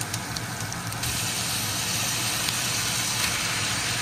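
Bacon, onions and garlic sizzling in an enamelled pot, with a few light clicks of a wooden spoon in the first second; the sizzle gets a little louder and steadier from about a second in as sliced mushrooms go into the pan.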